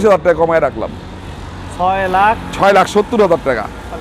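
Speech only: a man talking, over a faint low steady hum.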